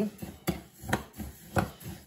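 A spoon stirring coarse bath salts and dried petals in a glass bowl: a grainy scraping with three sharp clicks of the spoon against the glass, about half a second apart.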